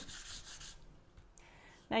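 Light hand sanding of a milk-painted wooden board, rubbed with a makeshift abrasive instead of sandpaper: a soft, scratchy rubbing that stops under a second in.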